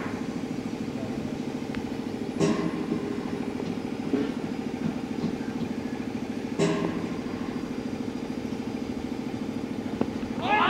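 An engine idling steadily, with two sharp knocks about two and a half and six and a half seconds in.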